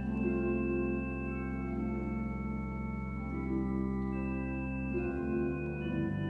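Organ playing a slow hymn in sustained, held chords, the chords changing every second or so and the bass notes shifting about five seconds in.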